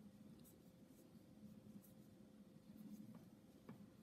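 Near silence with faint rustling of cotton yarn on a crochet hook as stitches are worked by hand, a couple of faint ticks late on, over a low steady hum.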